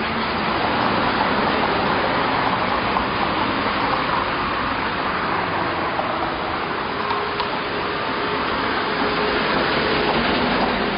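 Steady noise of road traffic along a city street, heard while walking on the sidewalk.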